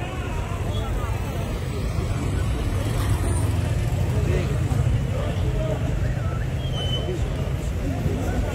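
Street traffic noise: vehicle engines running in a steady low rumble, with people's voices over it.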